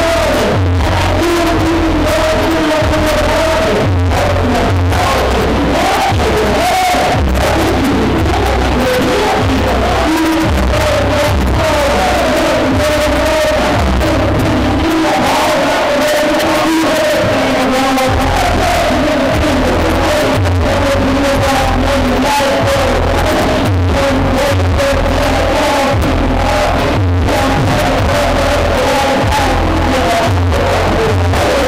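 Loud hip-hop track over a club sound system, with heavy bass and vocals over it; the bass drops out for a few seconds near the middle and then comes back.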